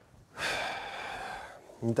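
A breathy exhale, a huff lasting about a second, followed by a man starting to speak near the end.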